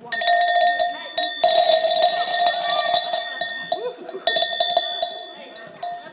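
A hand bell shaken and ringing, freshly struck about a second and a half in and again just after four seconds, with a metallic rattle over the ringing: the signal for a pony rider's start.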